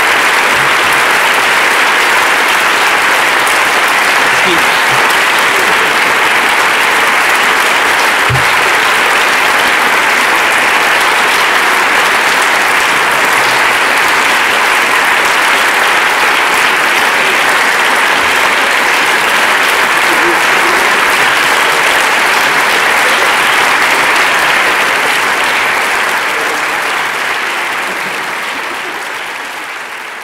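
Audience applauding steadily at length, fading out near the end.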